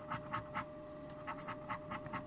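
Wooden stick scratching the coating off a lottery scratch ticket in short, irregular rasping strokes, several a second.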